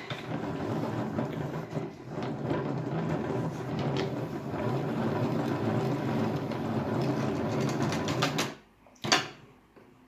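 Plastic hand-cranked yarn ball winder being cranked steadily, a continuous whirring as yarn winds onto its spindle. The cranking stops about eight and a half seconds in, followed by a single click.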